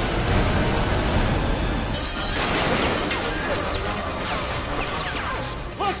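Film action sound of crashing and explosions, with metal debris smashing, under an orchestral score; the crashing is densest in the first two seconds, then eases, with a few high sliding tones.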